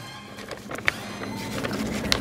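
Quiet handling of a sheet of printed paper soaked with Mod Podge glue, worked between the hands: soft rustling with a few light clicks, over faint background music.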